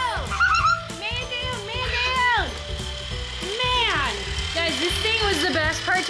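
High-pitched children's voices with swooping, sliding pitch over background music.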